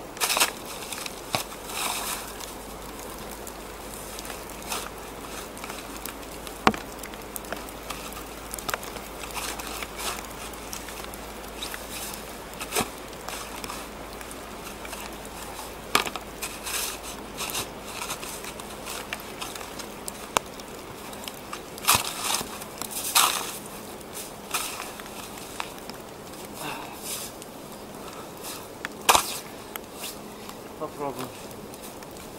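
A small snow shovel digging and scraping in deep snow, with irregular crunches, some strokes much louder than others, to free a bicycle stuck in it.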